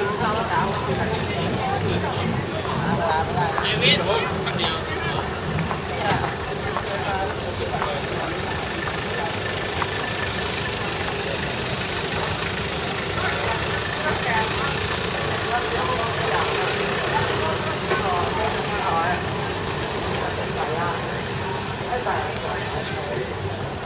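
Busy street ambience: a steady rumble of traffic with people's voices talking over it, no clear words.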